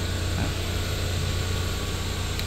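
Hyundai Grand i10 sedan idling: a steady low hum with an even hiss over it.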